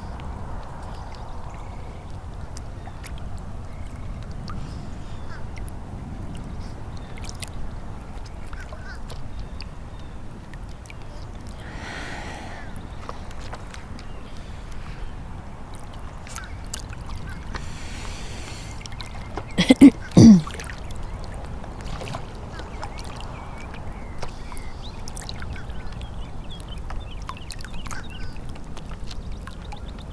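Lake water lapping and splashing at a camera held at the water's surface, with many small water clicks over a steady low wash. About twenty seconds in, two loud, brief sounds that fall in pitch stand out above the water.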